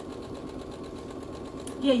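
Brother domestic sewing machine running steadily, stitching a seam through cotton fabric.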